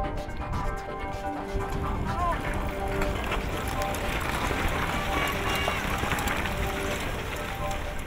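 Background music over the noise of a mass start of mountain bikes: a rush of tyres on rocky ground, with shouting, that swells through the middle.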